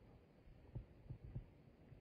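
Near silence: room tone with a few faint, low thumps about a second in.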